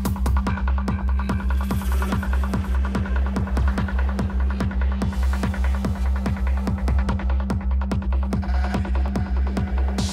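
Club DJ mix of bass-heavy electronic dance music: a fast, evenly spaced kick drum that drops in pitch on each hit, over a constant deep bass drone and a held low tone, with ticking hi-hats above.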